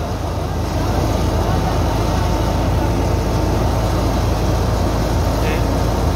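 Wheat thresher running steadily as it threshes wheat, driven by the shaft from a Massey Ferguson 260 tractor's three-cylinder diesel engine, whose low drone runs underneath. A voice is heard faintly near the end.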